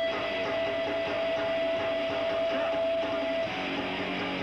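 Hardcore punk band playing live and loud, with guitar. A single steady high note is held until about three and a half seconds in, then stops and lower sustained notes come in.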